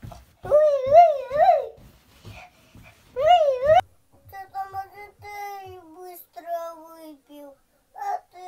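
A young child's voice: two loud warbling vocal sounds with the pitch swinging up and down, the second cut off abruptly. Then a softer sung tune of held notes stepping downward.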